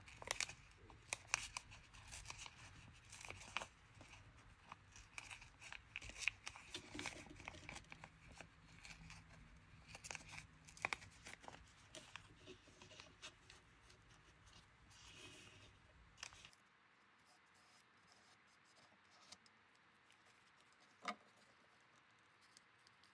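Thin rice paper being torn in small bits by hand and pressed around a plastic ornament: a faint, irregular crinkling rustle with soft ticks. It thins out after about sixteen seconds, leaving one small tick near the end.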